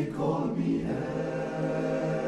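Men's barbershop chorus singing a cappella in close harmony, the voices moving onto a new chord about half a second in and holding it.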